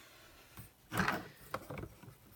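Handling noise as a hand reaches across a craft table for a tool: a soft knock about a second in, then a few light clicks.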